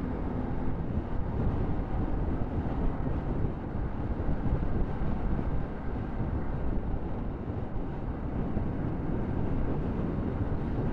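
Motorcycle riding along at steady speed, its engine running under a steady rush of wind on the helmet-mounted microphone.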